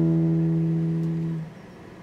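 Acoustic guitar chord ringing on after a strum and fading, then damped about one and a half seconds in, leaving a short pause.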